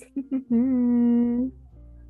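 A person humming one steady, held note for about a second.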